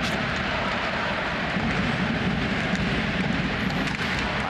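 Steady crowd din in an ice hockey arena during play, an even continuous noise with no single event standing out.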